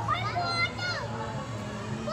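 Children's high-pitched voices calling out in short, rising and falling bursts over a steady low hum.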